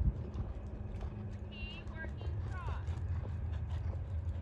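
Horse trotting, its hoofbeats muffled by the sand arena footing, with a few short chirping calls near the middle.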